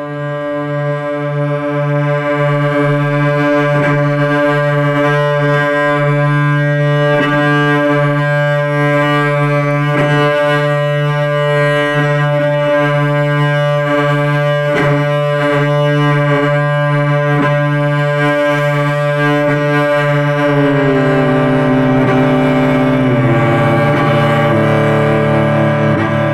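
Solo cello, bowed: a sustained low drone note rich in overtones, swelling in over the first couple of seconds, with short accents every second or two. A little before the end the higher notes above the drone slide and change pitch.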